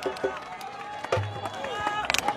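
Murmur of a crowd, with several voices talking faintly in the background and a few clicks.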